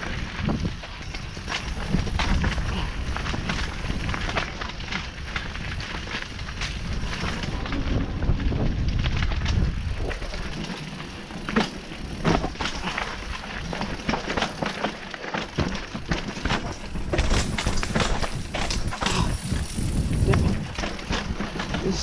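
Full-suspension mountain bike riding down a rocky dirt trail: a low wind rumble on the helmet-mounted microphone under the tyres rolling over dirt and rock, with frequent rattles and knocks from the bike that come thicker in the second half.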